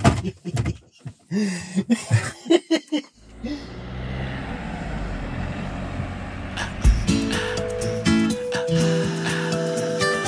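Laughter and voices in the cab, then a Fiat Ducato-based campervan driving along a lane, its engine and tyre noise building steadily. About seven seconds in, acoustic guitar music starts over it.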